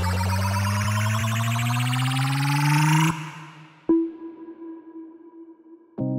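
Electronic dance music building on a rising sweep that climbs steadily in pitch for about three seconds, then cuts off suddenly. After a moment of near quiet, a single bell-like note sounds and rings out as it fades.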